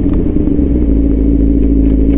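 Sportbike engine running at a steady, even pitch while cruising, over a heavy low rumble of wind on the helmet-mounted camera's microphone.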